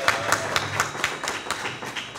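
Several people clapping in uneven, separate claps that thin out and fade toward the end.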